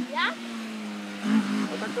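Opel Astra GSi rally car's four-cylinder engine running steadily on the stage, under spectators' voices, with a short rising whistle near the start.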